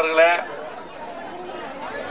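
A man's amplified speech through a microphone: a drawn-out word at the start, then a pause filled with faint background chatter.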